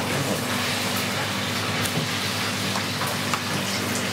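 Steady kitchen background noise: an even hiss over a low, constant machine hum, with a few faint ticks from handling on the chopping board.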